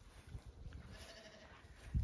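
Zwartbles ewe lambs grazing, quiet, with a faint brief bleat about a second in over a low rumble.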